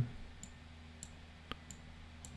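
A few faint computer mouse clicks, about four in two seconds, over a low steady hum.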